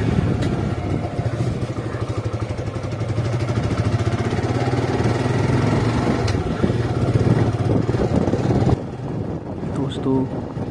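Motorcycle engine running at low road speed while riding, an even pulsing low note; it drops in level about a second before the end.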